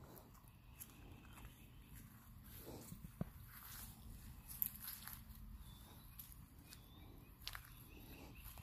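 Near silence with faint footsteps and rustling on grass and dry leaves, with a few small clicks.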